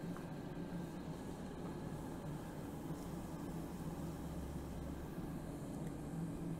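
Forge fire running with a steady rushing hum and low rumble from its blower.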